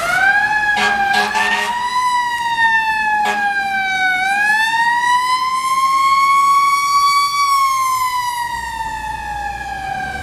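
A fire ladder truck's Federal Signal Q mechanical siren winds slowly up and down in long pitch glides as the truck passes. Short air-horn blasts sound about a second in and again about three seconds in.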